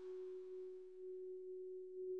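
A faint, steady electronic tone held on one pitch, like a sine-wave synth drone, in a quiet passage of a dance-music mix, with a high hiss fading away in the first second.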